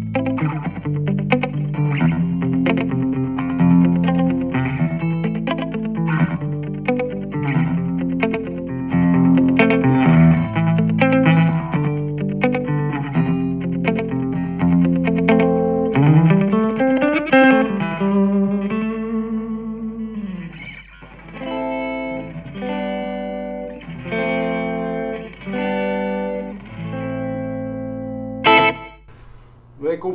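Electric guitar played through a Marshall Code 25 modelling amp on its 'Plexi Classic' preset, a Plexi-style tone at a low gain setting. Busy chord riffing fills the first half, a note bends up and back down around the middle, then held chords come in short phrases with small gaps.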